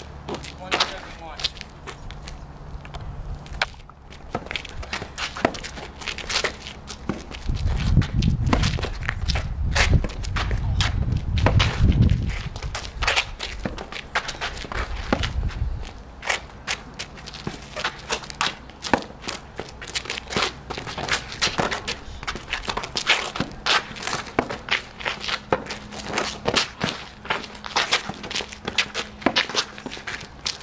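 A long tennis rally on an asphalt court: repeated sharp pops of racket strings hitting the ball and the ball bouncing, with sneakers stepping and scuffing on the pavement. A low rumble runs through the middle, from about eight to sixteen seconds in.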